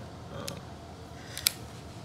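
Two light clicks from a Diamondback DB9 pistol being handled as its owner gets ready to eject the magazine, the second sharper, about a second and a half in.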